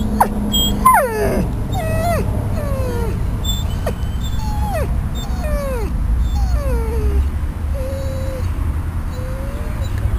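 Yellow Labrador retriever whining: a string of short high whines about a second apart, most falling in pitch, the last two flatter and lower. The owner says he whines like this, uncomfortable after surgery and in places he doesn't want to be, which makes it hard for a vet to tell whether he is in pain.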